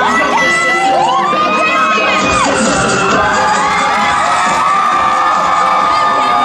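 Audience of young people screaming and cheering, many long held shrieks overlapping and rising and falling in pitch.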